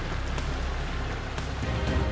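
Background music with a steady low drone, over an even hiss.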